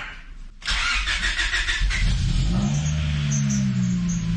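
Honda Prelude's H22A1 2.2-litre four-cylinder engine being started from inside the cabin after sitting unused for a while. It catches about a second in, its revs rise and then settle into a steady idle.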